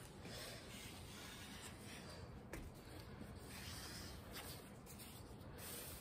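Faint scraping of a piece of mat board dragged across an inked copper etching plate, removing the excess etching ink in uneven strokes.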